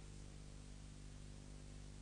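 Near silence: a steady low electrical hum under faint hiss, with nothing else happening.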